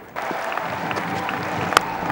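Stadium crowd noise, with a single sharp crack of bat on ball near the end as the batsman pulls a delivery hard.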